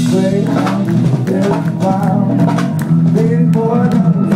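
Live band playing, with electric guitars over a drum kit.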